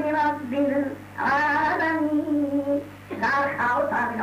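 A preacher's voice chanting in a sung, drawn-out style: long held notes in phrases with short pauses between them, over a steady low electrical hum.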